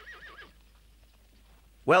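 Horse whinnying, a quavering call that wavers up and down several times and fades out about half a second in.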